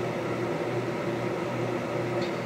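Steady mechanical hum with a faint hiss, the room's background noise of a running appliance.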